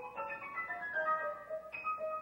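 Grand piano played solo: a quick passage high in the treble, with one high note struck again and again among the moving notes.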